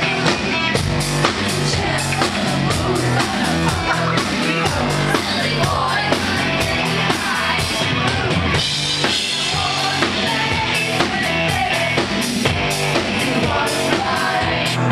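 Live electro-rock band playing loudly, with a drum kit keeping a steady beat under synthesizer keyboard, bass and vocals.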